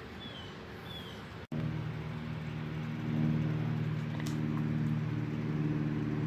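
A few faint short falling bird chirps. Then, after a cut about a second and a half in, a steady low engine hum sets in and swells slowly.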